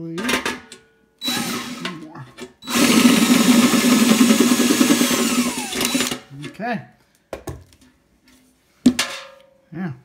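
DeWalt cordless drill with a step bit boring out a hole in the side of an empty steel paint can to half an inch: a short burst of drilling, then about three seconds of loud steady drilling that stops suddenly. A sharp knock comes near the end.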